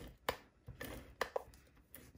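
Handheld tape runner (Stampin' Seal Plus) laying adhesive onto a small paper piece: a few short, sharp clicks with faint rubbing between them.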